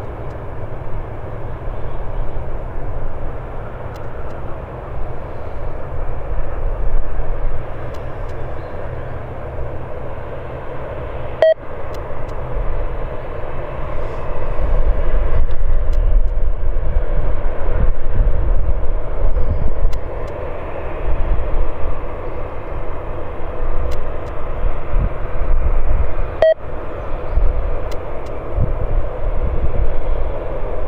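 Saudia Boeing 787 Dreamliner's jet engines running at low thrust as it rolls along the runway: a steady rumble with a faint whine, growing louder about halfway through. Two brief dropouts break the sound.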